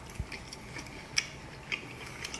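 A person chewing a mouthful of grilled steak, with a few short, sharp mouth clicks and a soft thud as the fork goes into the mouth.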